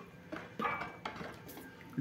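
Faint handling sounds as detergent is emptied from a plastic bottle into a plastic bucket of soap batter and a wooden spoon stirs it, with a few soft knocks.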